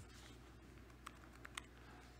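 Near silence with a few faint computer keystrokes, about half a second apart.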